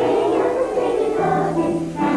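A choir of young primary-school children singing a Christmas carol together, in sustained, steady voices.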